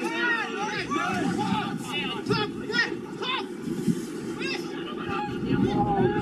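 Voices of players and onlookers shouting and calling out during a football match, over a low steady rumble.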